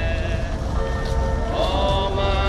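A crowd of voices singing in long held notes that change pitch about once a second, over a steady low rumble.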